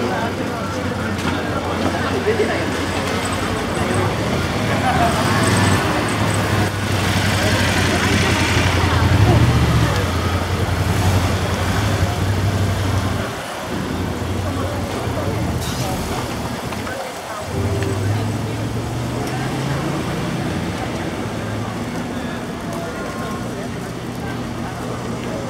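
Busy street ambience: voices of passers-by chattering over a steady low hum, which drops out briefly twice in the second half.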